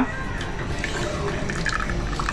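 Liquid pressed from avocado pulp trickling and dripping from a hand-wrung cloth into a glass bowl.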